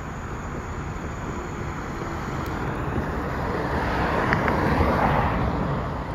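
A car driving past on a road, its tyre and engine noise swelling to loudest about four to five seconds in and then fading, over steady outdoor noise with some wind on the microphone.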